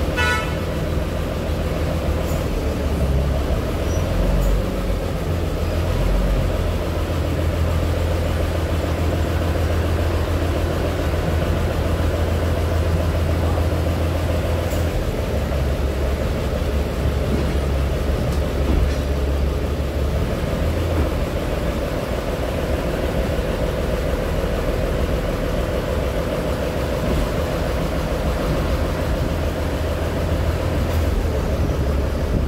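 Taiwan Railway DR2300-series diesel railcar running steadily with a low engine drone as it rolls along the track. The low engine note shifts a couple of times, about halfway through and again a few seconds later.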